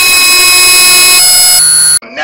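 A loud, steady, distorted tone with many stacked overtones, an audio editing effect. Some of its overtones drop out after about a second, and it cuts off abruptly at the end.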